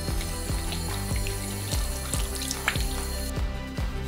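A tap running into a bathroom sink as hands are washed, cut off a little over three seconds in, under background music with a steady beat.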